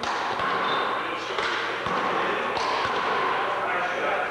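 A one-wall handball rally: a small rubber handball smacked by players' hands and striking the wall and wooden floor several times, sharp slaps a second or so apart. Voices talk and call underneath throughout.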